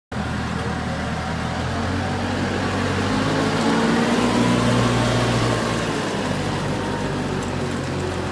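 Diesel engine of a CASE TX170-45 telehandler running as the machine drives off. The engine note rises and grows louder through the middle, then eases back to a steady run.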